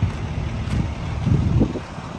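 Wind buffeting the microphone over a steady low rumble, with a short louder low burst about one and a half seconds in.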